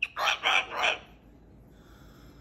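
Moluccan cockatoo making three short, loud, raspy sounds in quick succession, all within the first second.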